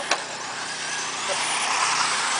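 Electric 1/10-scale 4WD RC buggies racing on a dirt track: high motor and drivetrain whine over tyre-on-dirt noise, with a whine rising in pitch in the second half. A sharp knock just after the start.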